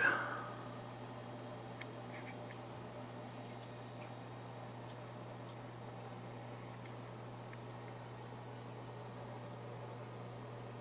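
Quiet room tone: a steady low hum with a faint even hiss and a few faint ticks.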